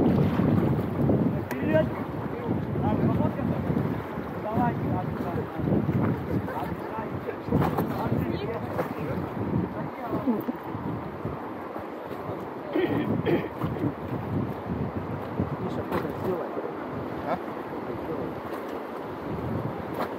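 Wind buffeting the microphone over the steady rush of river water around an inflatable raft on a fast mountain river, with brief voices a few times.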